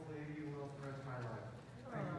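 Faint speech from a person talking into a microphone, with no other distinct sound.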